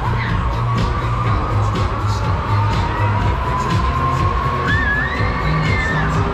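Loud music with a steady pulsing beat from a Break Dance fairground ride's sound system, with riders shouting and cheering over it, a few cries rising near the end.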